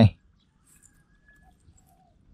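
A man says one short word, then near quiet with a faint held tone and a few brief, faint calls from an animal.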